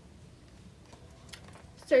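Quiet room tone with a few faint, light clicks in the middle, then a woman's voice begins right at the end.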